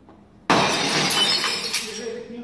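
A sudden loud crash about half a second in, dying away over a second and more.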